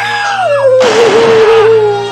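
A man screaming in pain after his fingers are cut off, one long cry falling in pitch. A sudden loud noisy blast joins it about a second in.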